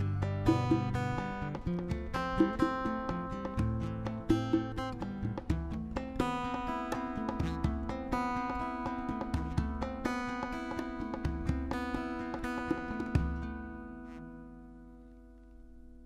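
Instrumental outro of an acoustic song: acoustic guitar playing with sharp percussion hits about every two seconds. From about 13 seconds in, a final chord rings out and fades away.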